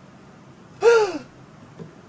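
A woman's single voiced gasp of surprise about a second in, falling in pitch.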